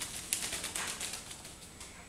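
A wet rook shaking out and flapping its wings: a quick, rustling flutter of feathers, densest in the first second and dying away toward the end.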